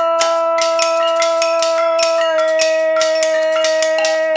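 A woman's voice holds one long sung note over kitchen-utensil percussion: metal tongs, glass jars and pots struck and clicked in a quick rhythm.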